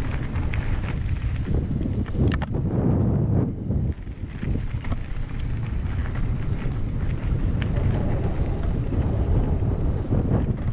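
Wind buffeting the microphone of a camera moving along a dirt trail, a steady low rumble, with many small rattles and knocks from the ride over the ground.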